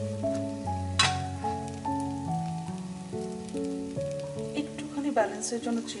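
Food frying in a stainless steel pan, with a wooden spatula stirring and scraping it, sharply about a second in and again near the end. This is heard under background music of steady instrumental notes.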